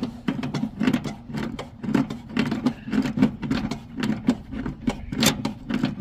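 Hand wrench tightening a brass quick-connect refrigerant line fitting on a mini-split's service valve, with repeated short metallic clicks and scrapes about twice a second and one sharper click near the end. The fitting is coming tight.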